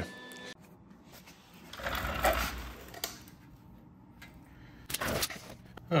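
Quiet handling noise: a soft rustle with a low rumble about two seconds in, then a couple of light clicks.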